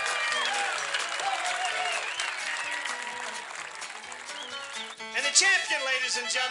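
Background music over crowd noise and clapping, with voices rising in excitement about five seconds in.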